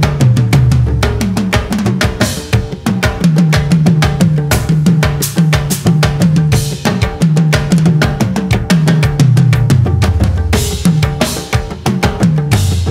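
Full drum kit played with sticks in a dense, fast groove: snare, bass drum, toms and cymbals, over a music track with a low, repeating bass part.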